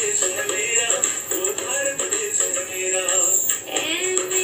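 Recorded Hindi patriotic song mashup: a singer's voice over instrumental backing, playing steadily.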